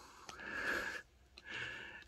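A person breathing close to the microphone: two soft, hissy breaths, the second starting about a second and a half in.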